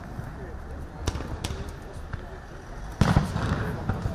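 Several sharp bangs over street noise and voices, the loudest coming as a close pair about three seconds in.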